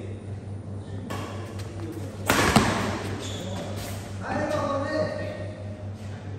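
A badminton racket striking the shuttlecock during a rally, one sharp crack about two and a half seconds in, the loudest sound, inside a brief burst of noise. A little later voices call out, over a steady low hum.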